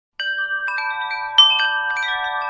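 Wind chimes ringing: a cluster of bright metallic tones struck one after another, overlapping and ringing on, starting just after the beginning with a louder strike about halfway through.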